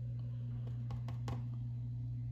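Steady low hum, with a few faint light taps and clicks about a second in as a paintbrush is handled at the paint pots.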